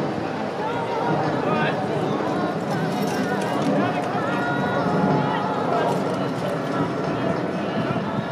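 Indistinct talk from onlookers over the hoofbeats of a four-horse carriage team driven at speed through a marathon obstacle, at a steady level throughout.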